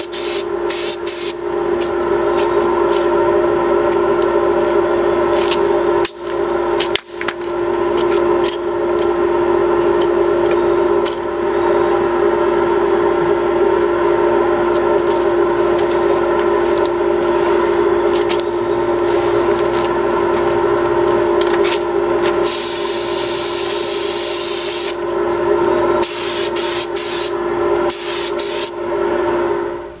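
Air-fed gravity-cup paint spray gun hissing in bursts, the longest about three seconds, over a steady pitched hum.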